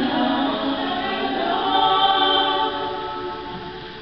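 Women's choir singing held chords in several parts; the phrase dies away over the last second and a half.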